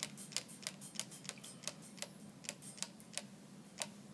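Trigger spray bottle pumped rapidly, a quick run of short spritzes and trigger clicks, about five a second, stopping shortly before the end.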